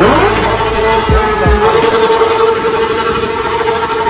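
Steady engine noise with an even whine, with a few low falling sweeps in the first second and a half.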